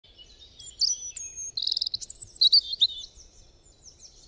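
A songbird chirping and singing: short high whistled notes and a rapid trill. It grows loud about a second in and fades toward the end.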